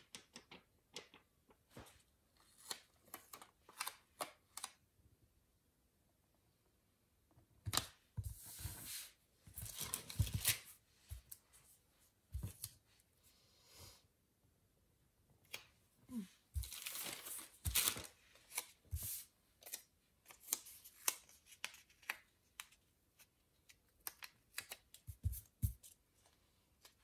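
Stickers and planner paper being handled: scattered light clicks and taps on the desk, with longer rustling, peeling bursts about eight seconds in and again about sixteen seconds in.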